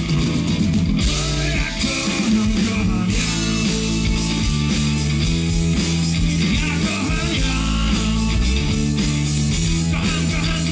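Live blues-rock band playing: electric guitar and electric bass guitar over a drum kit, with a steady beat and long held bass notes.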